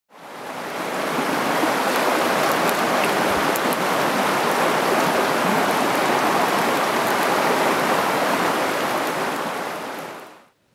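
Rushing stream water running over rocks as a steady rush, fading in over the first second and fading out at the end.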